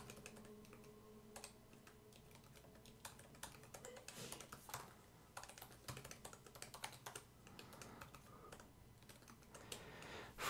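Faint typing on a computer keyboard: irregular keystrokes in short runs with brief pauses between them.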